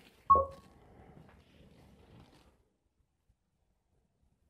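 A short electronic chime from the Roku Streambar, a clear tone that rings briefly and fades, acknowledging a voice-search command. Faint low noise follows for about two seconds.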